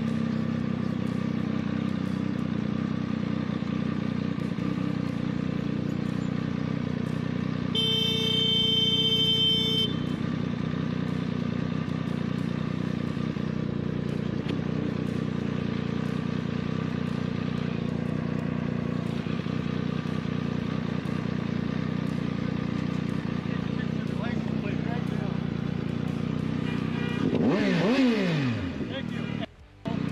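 Motorcycle engine idling steadily in traffic. About eight seconds in a horn sounds for roughly two seconds, and near the end the engine is blipped in a quick rev that dips and climbs in pitch.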